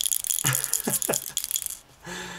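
A plastic toy bubble-solution bottle being shaken, the small ball in its cap-top game rattling in quick, dense clicks. The rattling stops just before the end.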